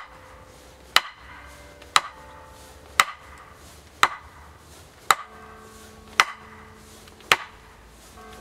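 A pointed wooden stake being hammered into frozen ground by blows on its top from above: sharp wooden knocks about once a second, each followed by a short ringing.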